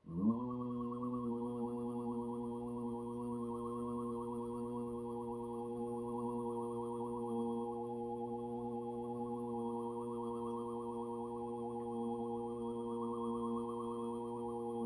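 A sustained low drone tone with many overtones. It starts with a quick upward slide in pitch, then holds one steady pitch throughout, while its upper overtones swell and fade slowly.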